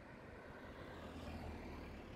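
Faint street traffic: a car's engine and tyres passing, swelling to a low hum about one and a half seconds in and then easing.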